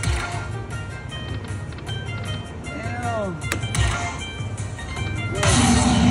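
Dragon Link slot machine's hold-and-spin bonus music: a steady pulsing beat with chiming tones. Near the end a louder burst of jingle sounds as another bonus coin lands.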